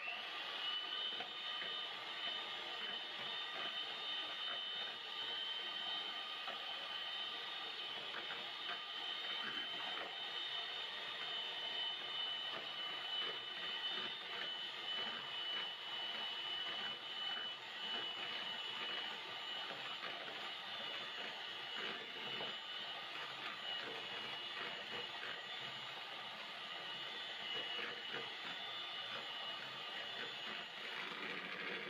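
Electric hand mixer running steadily at one speed, its beaters working through cake batter, with a constant high motor whine.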